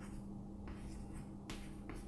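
Chalk writing on a chalkboard: a few short scratching strokes of the chalk against the board, over a steady low hum.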